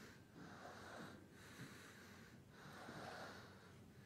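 Near silence: faint room tone with soft breathing close to the microphone, swelling and fading about once a second.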